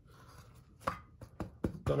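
A hand pressing down on a bread sandwich on a plate. The first second is quiet, then come four or so short, sharp taps, the last just as talk resumes.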